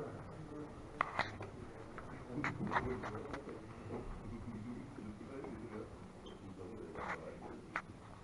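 Scattered sharp clicks of draughts pieces and game-clock buttons in a tournament hall, several in the first few seconds and a pair near the end, over a low murmur of voices.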